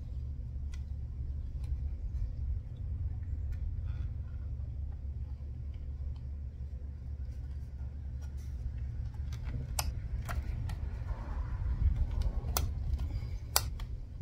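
Small plastic clicks and taps as wiring and connectors are worked back into a trolling motor's plastic head housing, with a few sharper clicks in the last few seconds, over a steady low rumble.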